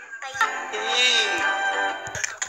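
Music with an electronically processed singing voice: after a brief lull, one held, gliding sung note begins about half a second in.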